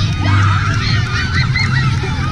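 Many children cheering and shrieking at once, their high voices rising and falling over one another, over a steady low hum.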